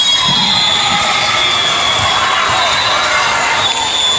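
Echoing din of a crowded indoor sports hall during volleyball play: many voices, shouts and cheers from players and spectators, mixed with the thuds of balls being hit and bounced on the wooden floor.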